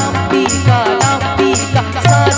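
Live ghazal music: a woman singing with harmonium, tabla and a steady high percussion beat of about four strokes a second.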